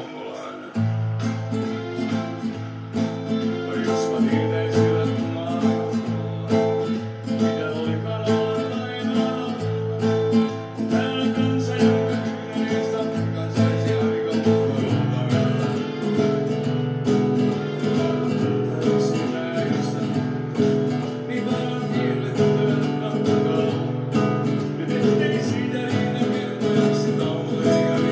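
Nylon-string classical guitar playing a rhythmic chord accompaniment with the right-hand fingers, bass notes alternating with chords, starting about a second in.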